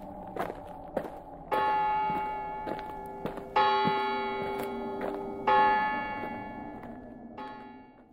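A few footsteps, then a church bell tolling four slow strikes about two seconds apart, each ringing on and fading, the last one weaker.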